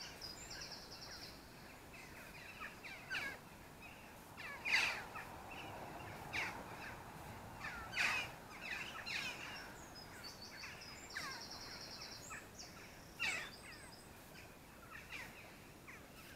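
Birds singing and calling: many short, quick descending chirps throughout, with a rapid high trill near the start and again about eleven seconds in.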